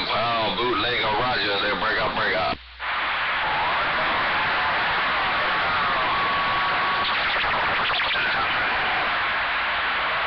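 CB radio receiver (a Cobra 2000 base station): a distorted voice comes through the speaker for the first couple of seconds and cuts out briefly. Then steady static hiss fills the open channel, with a faint whistle and faint garbled transmissions in it as the signal fades.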